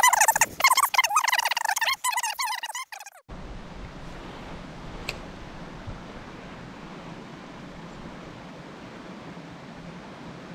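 A man speaking briefly, then a steady, even rush of a small rocky creek's flowing water.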